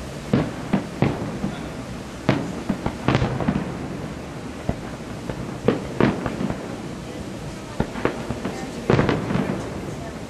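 Aerial fireworks shells bursting in an irregular run of sharp bangs, a dozen or more, some in quick clusters.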